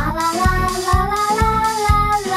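Children's song: a child's voice sings "fa la la la" in one drawn-out line that rises and falls, over a backing track with a steady beat.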